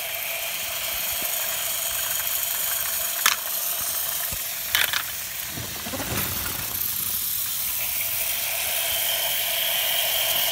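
GeoTrax battery-powered toy trains and plane running on their plastic track: a steady whir of small motors and gears, with two sharp clicks around the middle.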